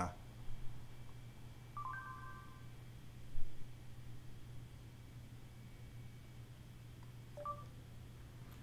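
Faint electronic beeps from the phone's Google voice search over a steady low hum. The first is a brief chord of tones about two seconds in. The second is a shorter two-tone beep near the end, as the search starts listening again.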